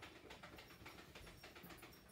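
Near silence: room tone with faint scattered clicks.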